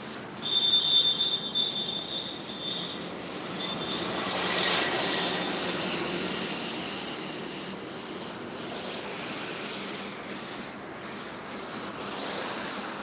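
Street traffic noise, a steady rush with one vehicle passing close by, loudest about five seconds in and then fading. Near the start a shrill, pulsing high tone sounds for about two and a half seconds.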